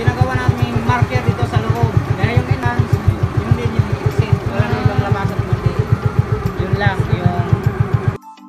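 A small outrigger boat's motor runs with a steady low beat, about eight a second, under a person talking.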